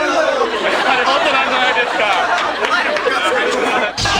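Chatter of several men talking over one another, their voices overlapping so that no single speaker stands out.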